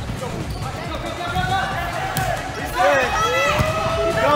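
Indoor volleyball play on a hardwood gym court: the ball is struck twice, and players' voices call out, louder in the second half.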